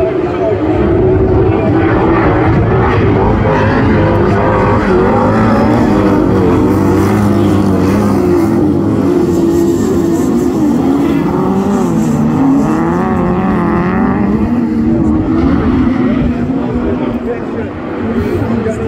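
Several autograss saloon cars racing on a dirt oval, their engines revving hard, the notes rising and falling as the cars accelerate and lift through the bends.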